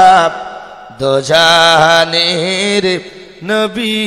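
A man chanting in the sung, drawn-out style of a Bengali waz sermon: a long held phrase starting about a second in, then shorter phrases near the end, with pauses between.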